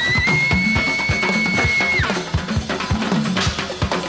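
Band music with a steady drum kit beat under a high lead note that rises slightly and is held for about two seconds, then stops while the drums carry on.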